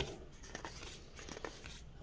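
Faint rustle and a few soft clicks of Magic: The Gathering trading cards being slid and flipped through in the hands.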